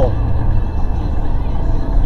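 Steady low rumble of a vehicle's engine and tyres at road speed, heard inside the cabin.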